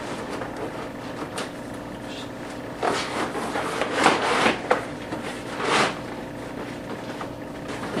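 Nylon fabric of a Lowepro Fastpack 250 camera backpack rustling and scraping as a laptop is worked into its padded laptop compartment. There are a few short bursts of rustling, about three, four and six seconds in, over a steady low hum.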